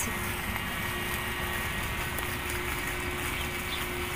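Steady outdoor background of distant road traffic: a low, even rumble with a constant low hum.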